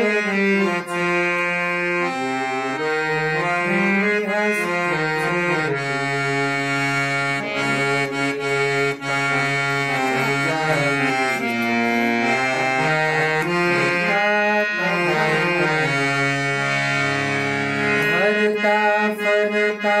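Hand-pumped harmonium playing a melody note by note over held lower notes, its reeds sounding steadily as the bellows are worked.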